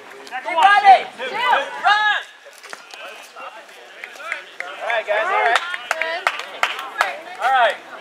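Players and spectators shouting and calling out, in two bursts: one in the first two seconds and another from about five seconds in until near the end.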